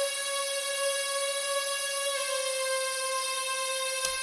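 A synthesizer note played from a keyboard controller, one high note held steadily with a bright tone full of overtones.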